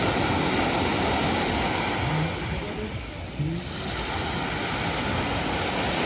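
Small surf breaking and washing up a beach of coarse sand and fine pebbles: a steady wash of water that eases briefly about three seconds in.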